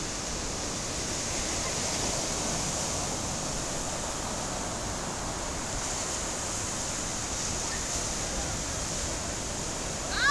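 Ocean surf breaking on the shore: a steady rush of noise with a low, uneven rumble underneath.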